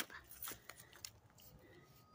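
Near quiet, with a few faint soft ticks and rustles in the first second.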